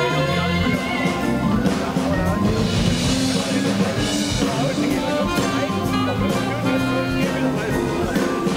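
Jazz-blues band playing with drums, electric guitar and keyboard.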